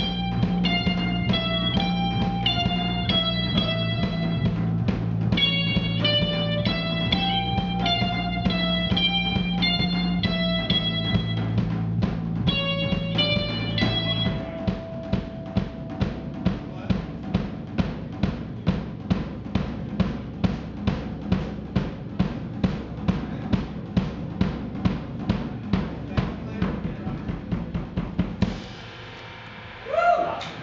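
Live rock band playing: electric guitars pick a melody over sustained bass notes and a drum kit. About halfway through, the guitars and bass drop out and the drums carry on alone, about two beats a second. The song then ends just before the close.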